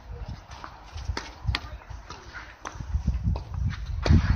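Tennis ball being struck by racket strings and bouncing on the court during a point: a few sharp knocks, the clearest a little over a second in, at about a second and a half, and near two and a half seconds. Beneath them is a fluctuating low rumble.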